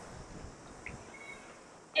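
A pause in the speech filled by faint outdoor background noise, with two short, high chirps about a second in.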